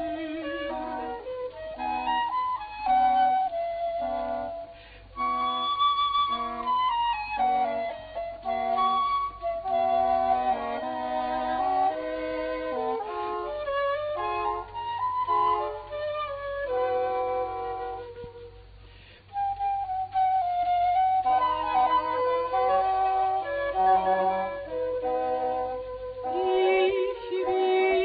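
Baroque chamber ensemble playing an instrumental passage led by a wooden transverse flute and an oboe, two melodic lines weaving over a low accompaniment. The music thins briefly twice, near a fifth of the way in and again about three quarters through.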